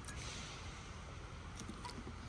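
Faint trickle of liquid creamer poured in a thin stream from a plastic bottle into a stainless steel tumbler, with a few light ticks near the end.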